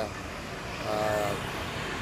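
Road traffic noise on a busy street, with a motor scooter passing close by and a brief engine tone about a second in.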